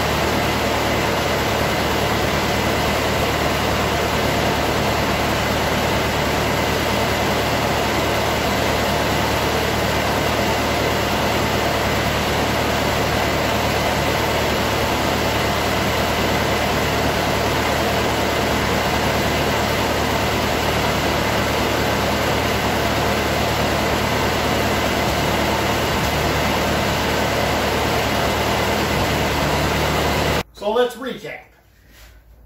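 Ford 8N tractor's four-cylinder flathead engine idling steadily.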